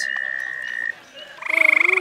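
A steady high-pitched tone that cuts off just before a second in, then a short, loud trill of rapid pulses near the end: a tree frog calling.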